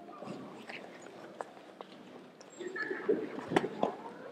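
Scattered taps and soft knocks of grapplers shifting on a gym mat, the sharpest knock about three and a half seconds in, with faint voices in the background.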